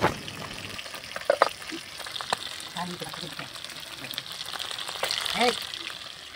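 Fish pieces sizzling as they fry in hot oil in an iron kadai, a steady hiss with a few light clicks.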